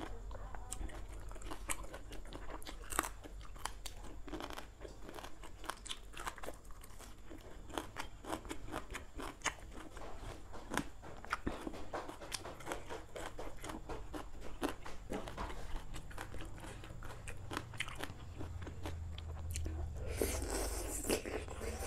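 Close-miked eating: many small, sharp crunches and chewing as raw greens and a spicy Thai noodle salad are eaten by hand.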